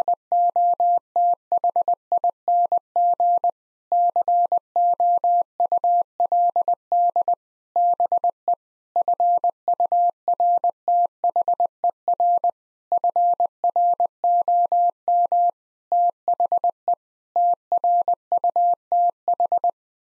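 Computer-generated Morse code tone at 20 words per minute: a single steady pitch keyed in short and long beeps, in seven groups with brief pauses between them, spelling the phrase "nothing could be further from the truth".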